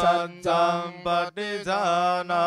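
Male voice chanting Pali scripture in a level recitation tone, the phrases broken by short pauses for breath.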